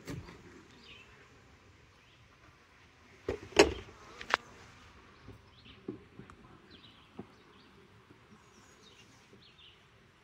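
Honeybees humming faintly around an opened nuc, with a cluster of sharp knocks about three and a half seconds in and another click just after, as wooden frames are pried with a hive tool and knock against the plastic nuc box; a few lighter ticks follow as a frame is lifted out.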